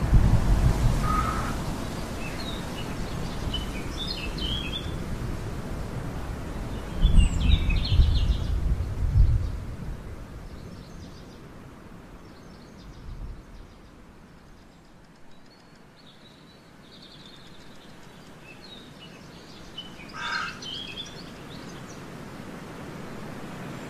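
Birds chirping now and then over a steady outdoor background noise, with bursts of low rumble near the start and again about seven to ten seconds in.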